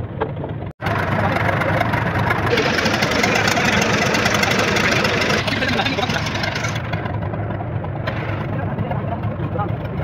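An engine running steadily, with indistinct voices over it. The sound cuts out for an instant just under a second in.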